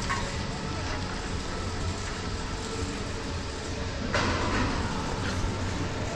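Detachable gondola terminal machinery running with a steady low hum, and a sharp clatter about four seconds in, with a lighter one a second later, as a cabin's Agamatic detachable grip runs into the terminal.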